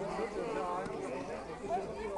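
Several people talking at once: overlapping, indistinct chatter of onlookers.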